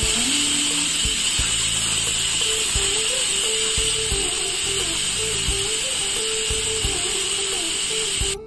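Aluminium pressure cooker whistling: steam jets from the weight valve in a loud, steady hiss, a sign that the cooker is at full pressure. It starts abruptly and cuts off after about eight seconds.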